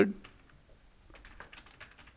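Computer keyboard typing: a run of faint, quick keystrokes.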